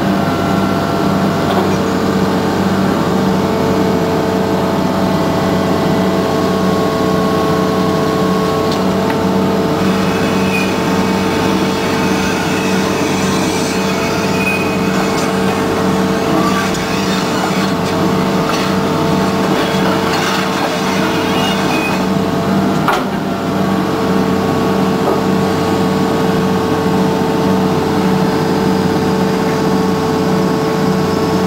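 Excavator's diesel engine running steadily under load, heard from inside the operator's cab while it lifts a steel shoring cage. Scattered light clicks come through the middle, and a single sharp knock about 23 seconds in.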